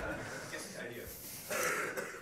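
A man briefly clearing his throat near the end, over faint room tone.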